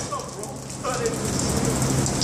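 Dirty water gushing out of a leaking overhead drain pipe and splashing onto plastic sheeting and the flooded concrete floor, a steady rushing spatter.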